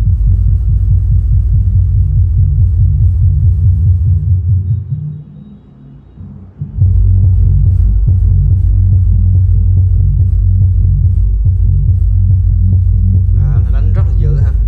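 GS-15 powered 15-inch subwoofer with a class D amplifier playing music loudly: deep bass with a steady pulsing beat. About four and a half seconds in the sound fades away, stays low for about two seconds, then comes back at full level.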